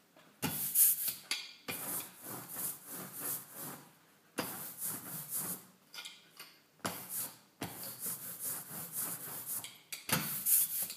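A rubber brayer rolled back and forth through tacky printing ink, in quick repeated strokes with brief pauses between runs, as ink is rolled out for a linocut block.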